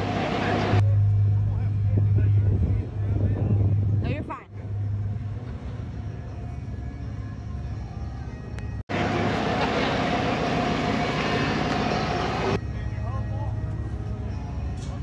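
Lifted Jeep Wrangler's engine running at low revs with a steady low rumble as it creeps up to and onto a flex ramp. The sound changes abruptly a few times.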